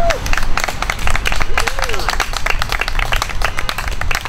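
A small crowd applauding with scattered, irregular clapping, and a brief voice call about halfway through.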